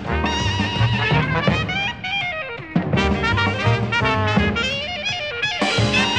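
Jazz band recording of a rag, with trumpet and other brass over guitar and drums. About two seconds in, a long note slides downward in pitch.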